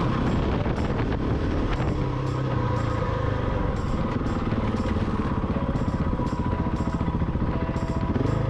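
A motorcycle engine running steadily while under way on a dirt road, with music carrying a light, regular beat underneath.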